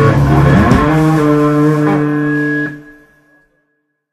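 Raw punk band finishing its final song: the distorted guitar slides up into a last held chord that rings on and cuts off sharply about three seconds in.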